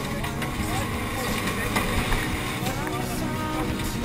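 Onboard sound of a Subaru Legacy 2.0 Turbo rally car's turbocharged flat-four engine running hard, with engine notes rising in pitch as it revs, about a second in and again near the end, heard from inside the cabin.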